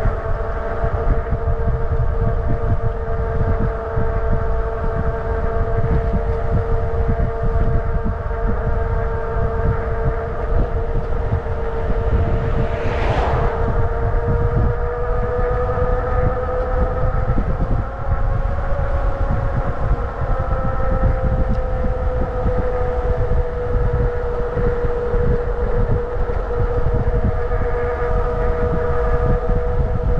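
Motorcycle engine running at a steady cruise, its pitch holding almost level, with wind rushing over the microphone. About thirteen seconds in, a brief whoosh rises and falls.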